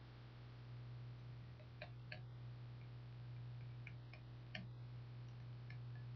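Quiet room tone: a steady low hum with a few faint, scattered clicks, several of them in close pairs.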